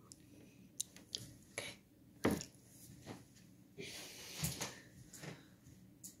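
Quiet handling of a phone propped on a table and steps across a small room: a few scattered taps and knocks, the loudest a little over two seconds in, and a soft rustle around four seconds.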